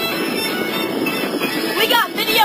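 Steady rush of wind and water spray from a motorboat running at speed towing an inflatable tube, with the boat's motor running underneath.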